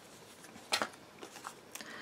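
Light handling of paper card and a sheet of foam adhesive dots as the dots are stuck onto a strip of card. A few faint clicks and taps, the clearest a quick pair about three-quarters of a second in.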